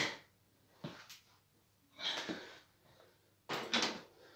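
A few short knocks and rattles from a mountain bike and feet on a carpeted floor as a rider comes off the bike: a sharp knock about a second in, a rustling burst around two seconds, and two quick knocks near the end.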